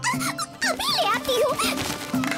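High, squeaky cartoon character voices chattering, their pitch swooping up and down, over background music with a steady low bass line.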